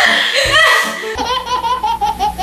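A woman laughing hard over background music with a beat; about a second in it gives way to a baby's quick, repeated laughter, about seven bursts a second.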